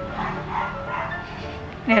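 Background music with three short barks of a small dog, about 0.4 s apart, in the first second. Near the end a voice starts a word with a sharply falling pitch.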